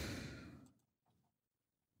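A faint breath fading out within the first second, then near silence.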